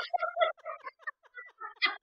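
A woman laughing hard in a run of short, breathy bursts that grow louder near the end.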